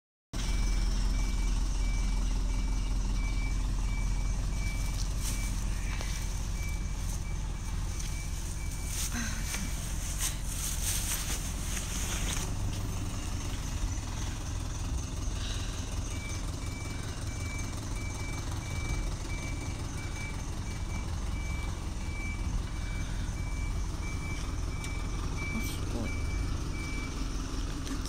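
A truck's reversing alarm beeping at an even pace over the low running of its engine, with the beeping stopping for several seconds in the middle. A spell of clattering comes about ten seconds in.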